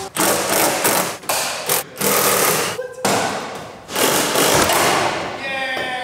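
A power tool cutting through lines in a car's engine bay, in two long runs of about three seconds and two seconds, each fading as it goes. Voices come in near the end.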